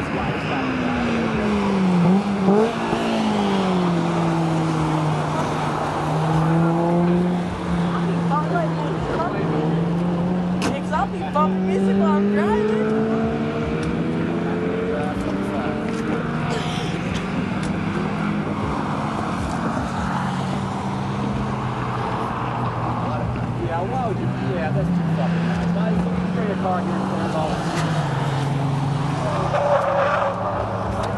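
Race car engines lapping a circuit, their note rising and falling over and over as the cars accelerate, shift and brake.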